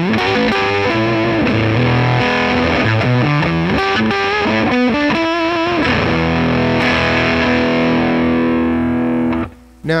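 Electric Stratocaster played through a hand-built Jordan Bosstone fuzz clone, with the fuzz knob at halfway, into a Dumble-style amp. It plays thick fuzzed single-note lead lines with vibrato, then a long sustained note that cuts off just before the end.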